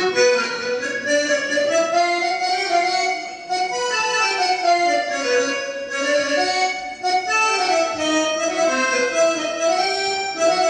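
Live instrumental music starting suddenly: a keyboard plays a slow melody of long held notes with a reedy, accordion-like voice.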